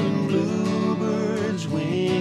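Acoustic guitar strummed in a steady rhythm while several men's voices sing held notes together in harmony.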